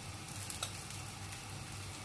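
Thin dosa batter and oil sizzling steadily on a hot tawa as the dosa cooks, with a light click about half a second in.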